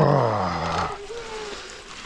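A man's wordless vocal exclamation sliding down in pitch over about the first second, over the steady noise of mountain bike tyres on a dirt trail.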